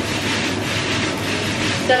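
Steady hiss of food frying in a pan on the stove, over the constant hum of a running cooker hood.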